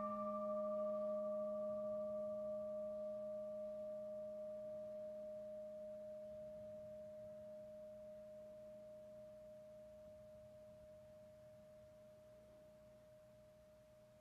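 Large standing singing bowl ringing on after one strike, rung to open worship. Its tones die away slowly: the higher ones fade out about halfway through, while the main tone carries on faintly.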